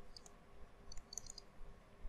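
Faint light clicks from handwriting on a computer screen with a pen input device: a single click just after the start and a quick cluster of clicks about a second in, over a faint steady hum.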